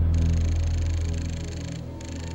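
Film sound effect of a photo-enhancement machine responding to a voice command: a high electronic whirring hiss with a thin whine in it. It starts just after the command, over a steady low synthesizer drone, and cuts off shortly before the end.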